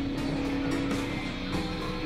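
Experimental electronic synthesizer drone music: held steady tones over a dense, noisy, grinding texture, the low held tone stepping up a little in pitch about three-quarters of the way through.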